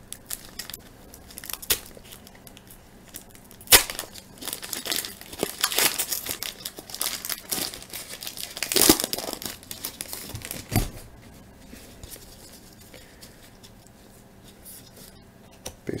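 Foil wrapper of a baseball card pack being torn open and crinkled by hands in rubber gloves. A sharp snap about four seconds in is followed by several seconds of crackling, tearing and crinkling, which dies down after about eleven seconds.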